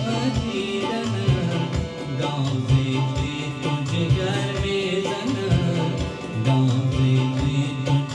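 A man singing an Afghan song to his own electronic keyboard accompaniment, with a steady drum beat underneath.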